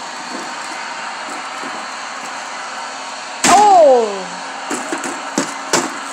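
A steady background hum, then a long vocal exclamation falling in pitch about three and a half seconds in, followed by three sharp knocks as plastic wrestling action figures are knocked against the foil-covered toy ring.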